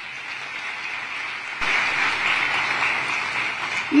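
Audience applauding, the clapping growing louder about a second and a half in.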